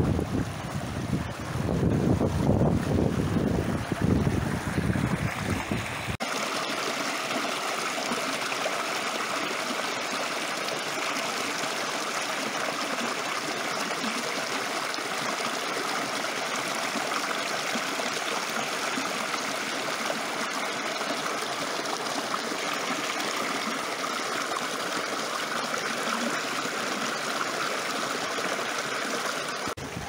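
Shallow mountain stream running over stones in a steady rush. For the first six seconds wind buffets the microphone, then there is a sudden cut to the water close up.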